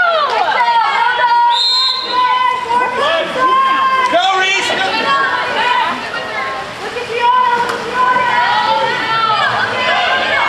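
Several high voices shouting and calling over one another at a water polo game, none clear enough to make out, with a short steady high tone about one and a half seconds in.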